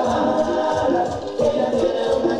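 Music with a steady beat and sung vocals, played from a DJ's mixing rig.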